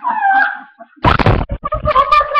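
A howl-like call sliding down in pitch, then a loud rustling, knocking noise as the webcam is jostled about a second in. A new held howling tone starts near the end.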